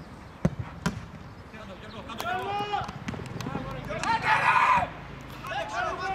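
A football kicked hard from a free kick, a sharp thud about half a second in, with a second thump a moment later. Players then shout on the pitch, with one loud shout a little before the end.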